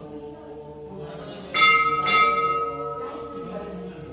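A metal temple bell struck twice in quick succession, about half a second apart, its clear tone ringing on and fading. Steady group chanting drones underneath.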